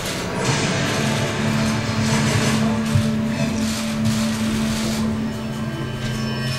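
Music with held low notes over the hum of a large room.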